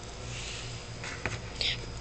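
Quiet room with a low steady hum and a couple of faint, breathy whispered sounds from the person filming, the second one near the end, plus a small click from handling.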